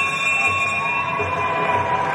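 An electronic buzzer sounds one steady tone that cuts off near the end; it is the signal for the end of a round in a Lethwei bout.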